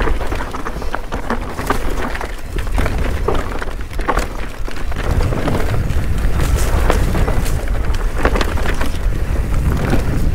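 Wind rumbling on an action camera's microphone as a mountain bike descends dirt singletrack at speed, with a run of knocks and rattles from the tyres and bike over roots and rocks.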